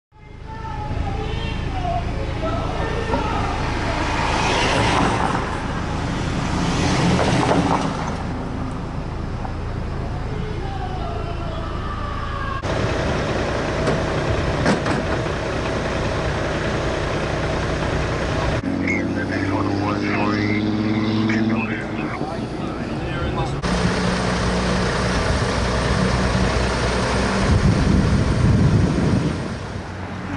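Street ambience of vehicles running and traffic noise, a steady low rumble, with indistinct voices. The sound changes abruptly three times at cuts, about 13, 19 and 24 seconds in.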